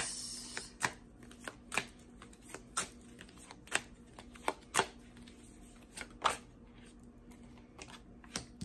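A deck of Urban Tarot cards being shuffled by hand: soft rustling with sharp card snaps about once a second, which stop a little before the end.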